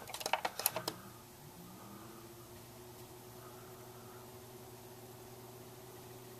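Rotary control knob on a Nismile tower fan clicking several times through its detents in the first second. The fan motor then starts on its lowest speed with a faint, steady hum, barely audible, that rises slightly in pitch as it spins up and then levels off.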